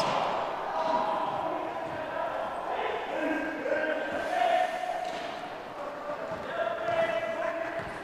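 Gym sound during a wheelchair basketball game: players' voices calling out across the hall and a basketball bouncing on the hardwood floor.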